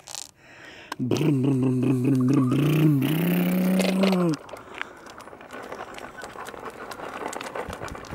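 A voice holds one long, steady vocal sound for about three seconds, stepping up in pitch near its end. After it, a plastic tricycle's wheels roll over a rough paved path, making a quieter steady rough noise.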